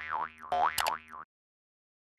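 Cartoon 'boing' sound effect, played twice in a row, its pitch wobbling up and down, with a sharp click during the second; it goes with an animated subscribe-button graphic and stops a little over a second in.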